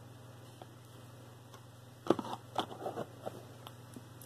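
A quiet pause over a faint steady hum, then from about two seconds in a run of light clicks and rustles: hands handling jewelry and its display on the table.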